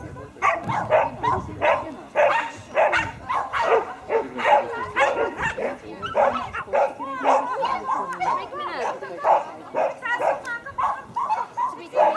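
A dog barking over and over in short, quick barks, several a second, as it runs an agility course.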